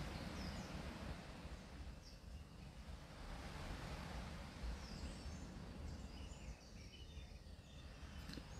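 Faint steady background noise with a few faint, short high chirps scattered through it.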